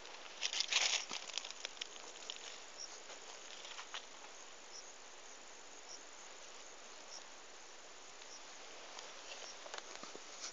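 Crackling rustle of cotton plants brushing against the phone, loudest in a burst about half a second in, then a steady faint hiss with sparse faint high chirps.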